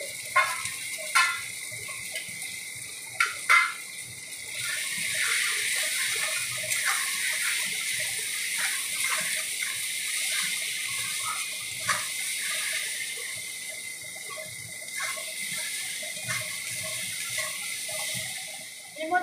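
Onions and freshly added ground spices sizzling in hot oil in an aluminium karahi, with a metal spatula clicking and scraping against the pan as it stirs. The sizzle grows louder about four seconds in.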